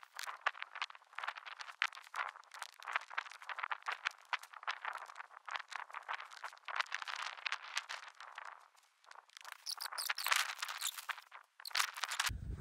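Irregular crunching and rustling: footsteps on snow-covered ground and nylon tarp fabric being handled as the tarp is brought down over the tent. There is a short lull about nine seconds in.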